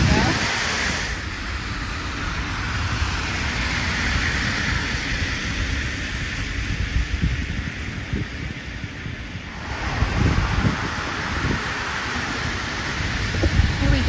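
Wind buffeting the microphone, a fluctuating low rumble, over a steady hiss of street traffic; it eases briefly about two-thirds of the way through, then picks up again.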